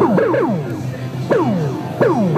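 REON Drift Box analog modular synthesizer playing quick downward pitch sweeps over a steady low drone. Several sweeps overlap in the first half-second and another comes about a second and a half in.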